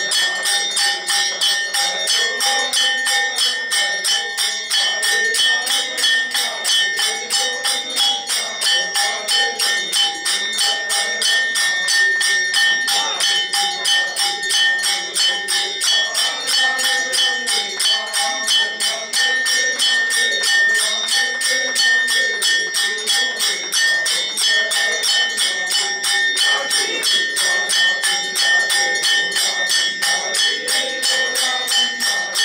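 Temple aarti music: a hand-held brass gong struck in a fast, steady beat, its ringing tone held throughout, with handclaps and sung aarti behind it.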